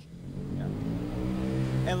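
A motor vehicle's engine running and slowly rising in pitch as it accelerates.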